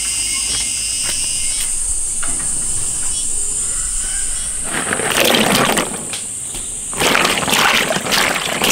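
A steady high insect drone for the first few seconds, then water splashing and sloshing as green chili peppers are rubbed and washed by hand in a bowl of water, in two bursts about five and seven seconds in.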